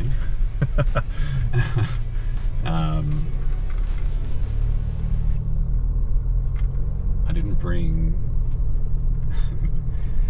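Cabin noise inside a Nissan Navara NP300 driving slowly over a rough, muddy dirt track: a steady low rumble of engine and tyres, with scattered light clicks and rattles as the ute bumps along.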